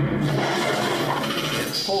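Loud, harsh rasping noise from a video's logo intro, holding at an even level throughout.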